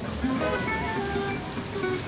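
Background music of short melodic notes over a steady hiss of street noise.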